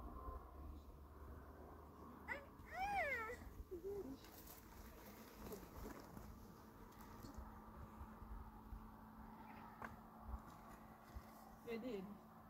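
A toddler's short, high-pitched call that rises and falls in pitch about three seconds in, over a quiet background; a brief voice comes again near the end.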